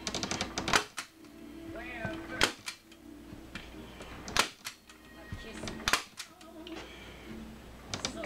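Hand-squeezed staple gun driving staples through a vinyl seat cover into a plastic motorcycle seat pan: a series of sharp snaps, about one every one and a half to two seconds.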